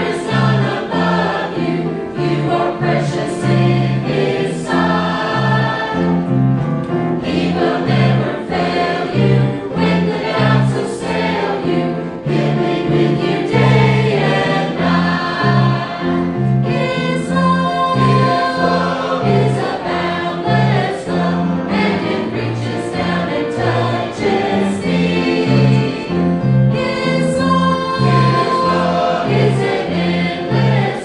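Mixed church choir of men and women singing together, with a steady repeating bass line beneath.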